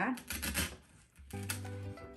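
Brief scratchy rustling of silk flower stems and artificial greenery being pushed into the arrangement, then background music with a stepping bass line, which comes up clearly about two-thirds of the way through.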